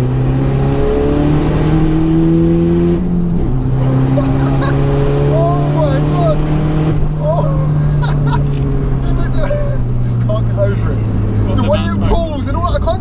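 Tuned VW Golf 1.9 TDI four-cylinder turbodiesel heard from inside the cabin under acceleration. The engine note rises through a gear, drops with a gear change about three seconds in, then holds a steadier, slowly falling note.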